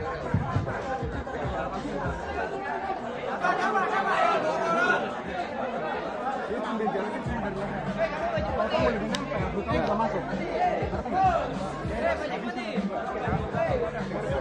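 Overlapping chatter: several people talking at once close by, with no single clear voice.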